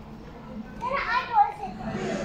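A child's high voice calls out once, about a second in, its pitch rising and falling.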